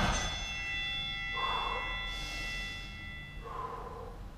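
A man breathing hard after an exercise round, with two heavy exhalations about a second and a half in and near the end. Under them, a ringing tone with several steady pitches fades away over about three seconds.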